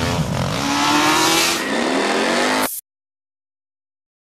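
Sound effect of a motor vehicle engine revving up as it accelerates, its pitch rising over a rushing noise. It cuts off suddenly nearly three seconds in.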